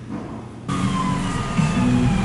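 An emergency-vehicle siren wailing in slow falling and rising sweeps, starting abruptly under a second in, heard from inside a car over a low cabin hum.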